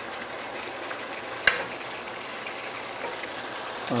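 Pots cooking on a stove: a steady bubbling, sizzling hiss from a pot of water at the boil and a simmering chicken curry, with one sharp click about a third of the way in.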